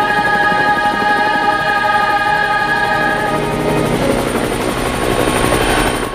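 A held choral chord fades out as a helicopter sound effect builds, its rotor chopping steadily. The helicopter sound stops suddenly at the end.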